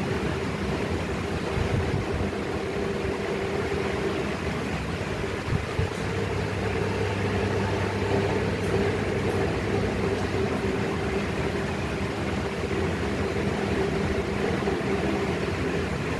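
A steady mechanical hum with a constant low drone that does not change, with a brief faint knock about five and a half seconds in.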